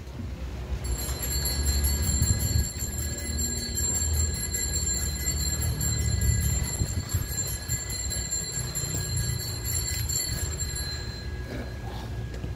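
Small altar bells shaken and ringing continuously for about ten seconds, marking the elevation of the chalice at the consecration. A low rumble runs underneath.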